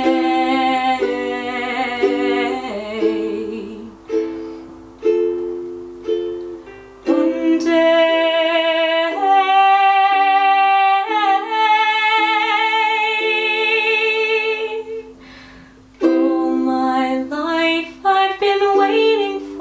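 A ukulele strummed in chords while a woman sings along, holding long notes with vibrato from about seven seconds in; the music dips briefly near the end, then picks up again.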